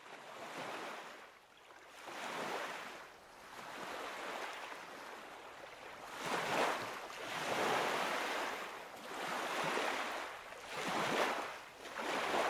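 Small waves lapping and washing onto a shore, the wash swelling and falling back every couple of seconds.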